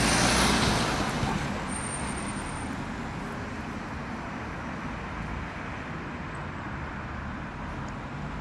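Road traffic: a van passing close, loudest at the start and fading over a couple of seconds into a steady hum of passing cars.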